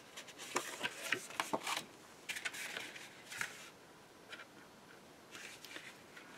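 Black cardstock being handled and pressed into its score-line fold: clusters of short, crisp paper rustles and scrapes, busiest in the first few seconds, a quieter stretch, then a few more near the end.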